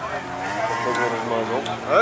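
Race cars' engines running hard as they come past on a dirt track. Their pitch rises and falls, with a quick rising rev near the end.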